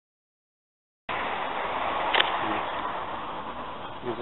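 Silence for about a second, then steady city street noise, a hiss of traffic, starts abruptly and fades a little, with one short sharp sound about two seconds in.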